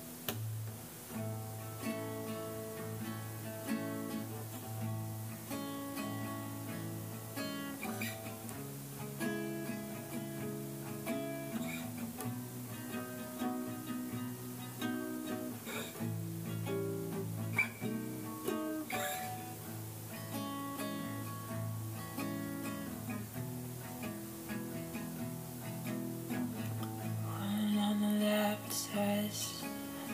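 Guitar playing an instrumental passage of the song, picked notes and chords, growing louder near the end.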